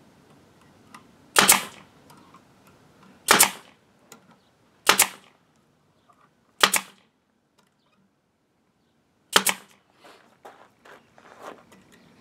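Pneumatic nail gun driving nails into OSB panels: five sharp shots, each about one and a half to two seconds apart, with a longer pause before the last, and each followed by a short puff of air.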